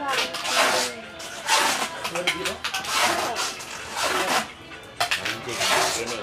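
Indistinct talking that the transcript did not catch, with a few short rustling noises in between.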